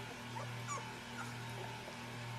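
Puppies giving a few faint, short whimpering squeaks as they mouth and nip at each other's faces, over a low steady hum.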